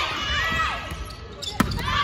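Girls' volleyball players calling out during a drill, several high voices overlapping, with a volleyball struck sharply once about one and a half seconds in.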